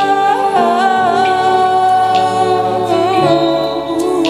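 Live worship band playing a slow song, with a singing voice wavering over long sustained chords.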